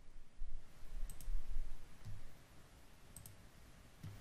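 Computer mouse clicking: a quick double click about a second in and another about three seconds in, with a low rumbling bump underneath during the first half.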